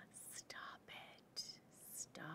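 A woman whispering faintly under her breath, in a few short breathy bits.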